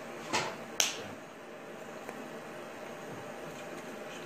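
Two quick slaps of hands striking together during sign language, about half a second apart and early on; the second is sharper and louder. Steady room hiss runs underneath.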